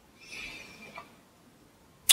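A soft, breathy exhale or intake of breath lasting under a second, followed by a faint mouth click about a second in.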